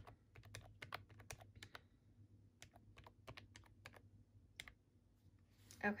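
Keys of a Sharp desktop calculator being pressed: a quick run of faint clicks for about two seconds, then a few more scattered presses.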